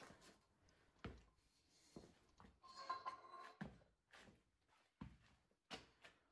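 Near silence: room tone, with a few faint thumps spread through it.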